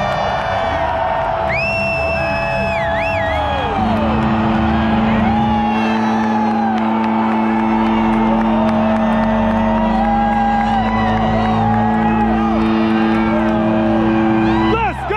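Stadium crowd yelling and whooping over music from the stadium PA. About four seconds in, a long steady low chord comes in and holds.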